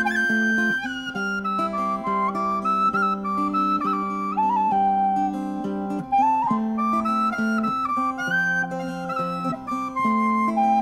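Instrumental folk music: a flute plays a slow melody that moves in steps through held notes, over guitar accompaniment.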